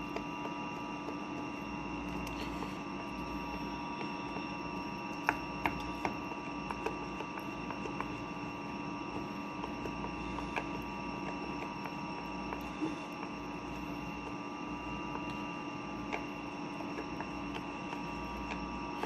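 A steady electrical hum, with a few faint clicks of a spoon against a plastic tub as rice-flour batter is stirred by hand.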